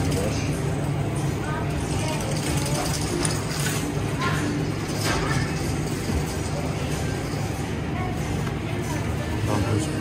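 Grocery store ambience: a steady low hum under indistinct background voices and faint music.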